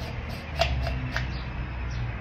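Focal reducer being screwed onto the threads of a 2-inch star diagonal: a few faint metal clicks and scrapes from the threads and fingers, over a low steady hum.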